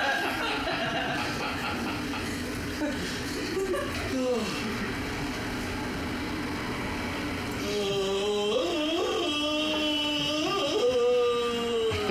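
Exaggerated, voiced yawns: one falls in pitch about four seconds in, and a longer one wavers up and down through the last four seconds.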